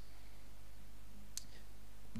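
A pause with only a steady low hum from the microphone line, broken by a single short, sharp click about one and a half seconds in.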